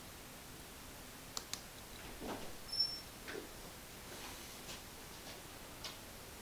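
A few faint clicks and soft knocks over low room noise, the loudest knock about halfway, with a brief thin high tone at the same moment.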